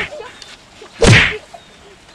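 A loud, whip-like swish and crack of a stick blow about a second in, right after the dying tail of another identical blow at the start.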